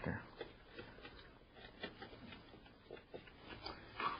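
Faint, scattered small clicks and rustles of a flat ribbon cable being handled as its 40-pin ATA connector is pushed onto a CD-ROM drive in a PC case.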